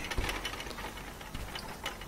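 Trampoline springs and mat creaking and ticking under bouncing, in a string of light irregular clicks, with a dull low thud about a quarter second in.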